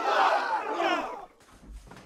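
Several high-pitched voices yelling together, wavering in pitch, cutting off about a second and a quarter in.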